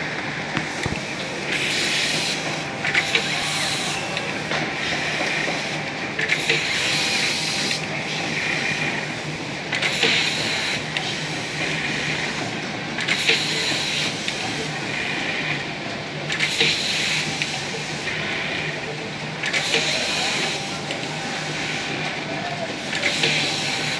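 Computerized pattern sewing machine stitching through a clear plastic template, running steadily with a low hum and a hissy surge every one to three seconds as the template is driven along its path, with a few sharp clicks.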